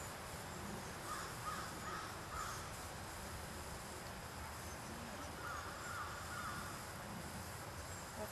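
Outdoor ambience: a steady faint hum of insects, with two short series of distant bird calls, about a second in and again about five and a half seconds in.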